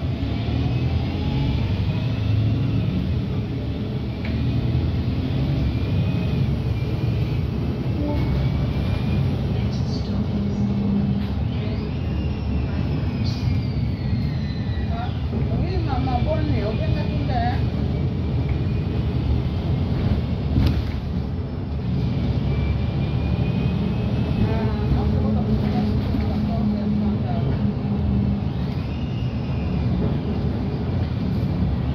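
Cabin sound of an Alexander Dennis Enviro200 MMC single-deck bus on the move: a steady low engine and road rumble, with the engine note strengthening for a second or two about ten seconds in and again for several seconds near the end. Occasional high squeaks and whines glide over the rumble.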